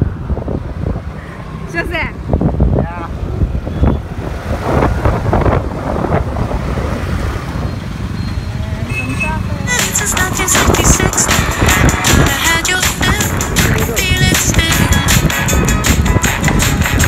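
Wind rumble and road noise from riding pillion on a moving scooter, with voices in the first few seconds. Background music comes in about ten seconds in and carries on over the road noise.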